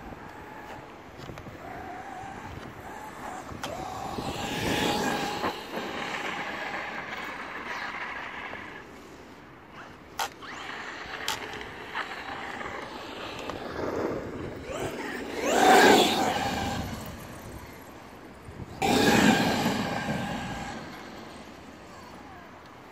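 Traxxas X-Maxx electric RC monster truck's brushless motor whining as it drives and accelerates across grass, in three bursts. The loudest comes about two-thirds of the way through, with the pitch rising.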